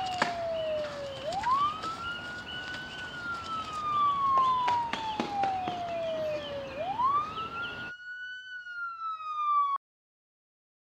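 Police siren wailing, its pitch sweeping up quickly and falling slowly about every five and a half seconds. The street background drops away about eight seconds in, leaving the siren alone until it cuts off suddenly just before the end.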